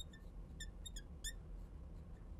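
A marker squeaking on a glass lightboard as a word is written: about half a dozen brief, faint, high squeaks in the first second and a half, a few sliding in pitch.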